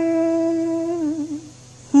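A singer holds the last note of a cải lương vocal phrase. The note is steady, then wavers briefly and dies away about a second and a half in, leaving a short hush.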